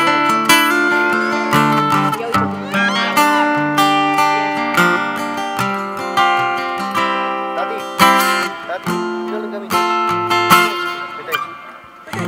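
Acoustic guitar playing a song's instrumental introduction, a run of picked chords and single notes ringing on. It grows quieter near the end.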